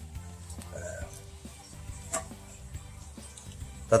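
Faint background music with a few light clicks and knocks from a drink can and a plastic toy pistol being handled.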